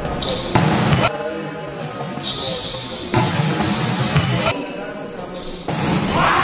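Volleyball being struck during a rally: several sharp smacks of hands and forearms on the ball, echoing in a large gym, with players' voices calling out.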